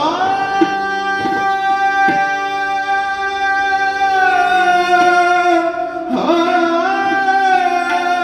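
Hindustani classical male voice singing a long held note in Raga Bageshwari, then sliding up into another held note about six seconds in, over a tanpura drone with harmonium and a few tabla strokes.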